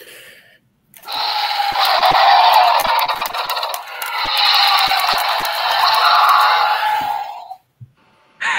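A man's harsh, screeching imitation of a dinosaur roar, heard over a video call. It starts about a second in and lasts some six seconds in two long swells, with crackling distortion throughout.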